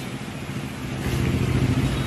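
A motor vehicle's engine passes by on the road, a low hum that swells to its loudest near the end and then begins to fade.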